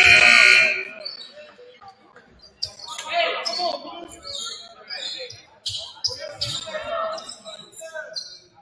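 Basketball gym sounds during a stoppage: a loud, shrill signal blast lasting under a second right at the start, then sneaker squeaks, a few ball bounces and voices echoing in the hall.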